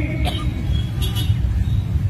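Steady low rumble of road traffic outdoors during a pause in speech, with a couple of faint clicks about a quarter second and a second in.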